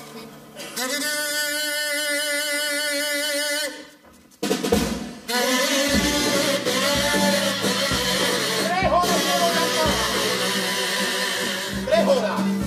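Carnival kazoos (pitos) buzzing: first a steady held chord, then, after a brief break about four seconds in, a wavering melody over a bass drum and snare, the instrumental lead-in of a chirigota's pasodoble.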